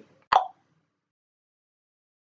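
A brief blip about a third of a second in, cut off abruptly, then dead silence.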